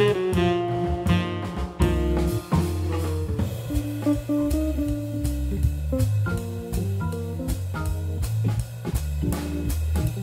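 Live jazz blues by a quartet: a saxophone line ends about two seconds in, then an archtop electric guitar solos over organ bass and swinging drums with regular cymbal strokes.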